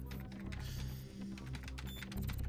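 Computer keyboard typing, a quick run of clicks, over a low, steady music score.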